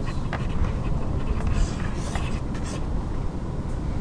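A steady low rumble of background room noise, with a few faint scratchy sounds about one and a half to three seconds in.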